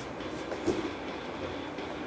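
Steady background noise with faint handling sounds as a cardboard box is rummaged through, and a small knock about two-thirds of a second in.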